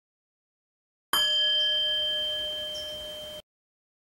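A single struck metal chime rings out about a second in with a clear steady tone and slowly fades, then is cut off abruptly after a little over two seconds.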